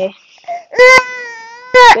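A baby crying: one loud, drawn-out wail of about a second, starting just under a second in and breaking off just before the end.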